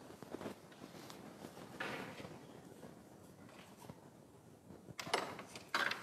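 Faint taps and clicks on a Subbuteo table as a miniature player is flicked at the small ball for a set shot and the ball is stopped by the goalkeeper figure. The louder clicks come near the end.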